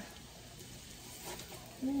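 Garlic pieces sizzling faintly in hot oil in a skillet, as a steady soft hiss.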